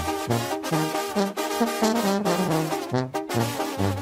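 Mexican banda music in an instrumental passage: the brass section plays short rhythmic figures over a bouncing bass line, with regular percussion hits.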